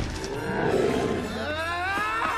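A cartoon monster's roar from the Ursa, a bear-like Grimm: a low growl that builds into a pitched roar rising in pitch near the end.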